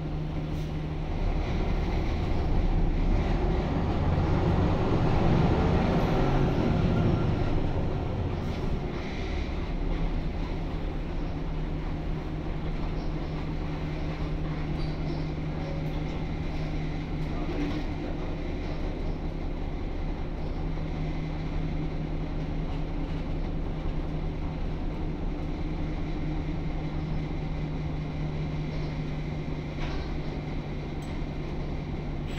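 Jelcz 120M city bus's WSK Mielec SWT 11/300/1 six-cylinder diesel, heard from inside the passenger cabin, working louder for several seconds as the bus gets under way, then running steadily at an even level.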